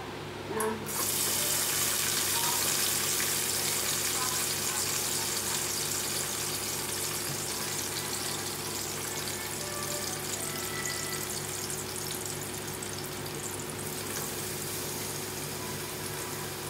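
Sliced onions and mint leaves sizzling in hot oil in a pot. The sizzle starts suddenly about a second in, holds steady, and eases slightly near the end, over a steady low hum.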